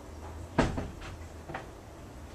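A sharp clack just over half a second in, followed by two lighter knocks within the next second.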